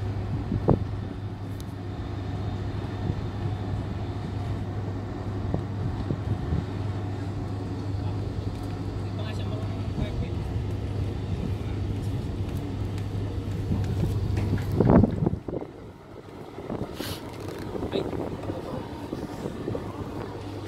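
Steady low hum of a running engine, with faint voices in the background. About fifteen seconds in there is one loud knock, and the hum drops away.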